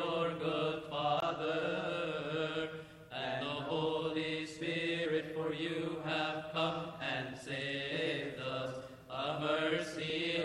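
Coptic Orthodox liturgical chant, a congregational response sung on long drawn-out notes, with short breaks about three seconds in and again near the end.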